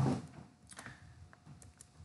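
A few faint, short, scattered clicks from computer input while numbers are written on screen.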